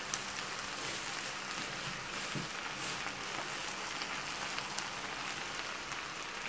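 Beef and onions frying in a stainless steel pot, a steady sizzling hiss with a few faint ticks.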